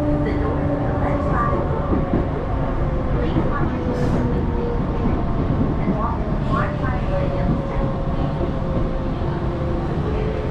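Hakone Tojan Railway electric train running, heard from inside the carriage: a steady rumble of wheels on the track with faint steady tones that drift slowly in pitch.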